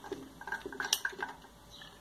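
Metal spoon scraping and tapping on a ceramic plate as fresh corn kernels are pushed off it, with kernels dropping into a plastic blender jar. It is a run of light clicks and scrapes in the first second or so, then it goes quieter.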